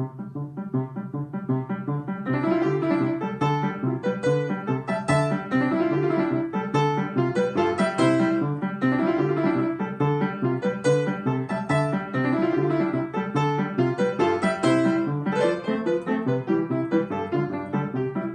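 Upright piano played, starting from silence into a fast, flowing stream of notes that rises and falls in a repeating pattern, a grade 6 piece.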